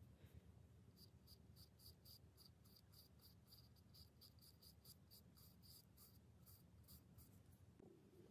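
Faint, quick scratchy strokes of a small paintbrush dabbing paint onto a wooden birdhouse wall, about four a second, stopping near the end.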